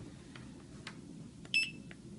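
Handheld barcode scanner giving a single short, high beep about one and a half seconds in, the good-read signal as it scans the barcode label on a raw-material jar. A few faint clicks come before it.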